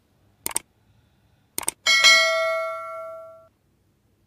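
Two short clicks about a second apart, then a bright bell ding that rings out and fades over about a second and a half. This is the click-and-notification-bell sound effect of an animated subscribe button.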